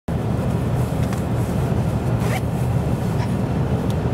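Steady low rumble inside the cabin of a Toyota Land Cruiser 80, with a few faint rustles.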